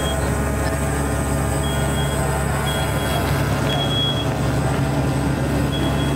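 A smoke alarm in the burning room sounding its evacuation pattern: short high beeps in threes, about a second apart, with a pause between groups. Under it runs a louder steady low drone like an idling engine.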